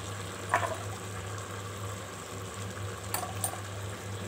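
Biryani rice and spiced stock simmering and bubbling in an aluminium pot, over a steady low hum, with two brief sharper sounds about half a second in and a little after three seconds in.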